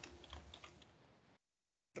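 Faint computer-keyboard typing: a short run of key clicks that dies away after about half a second.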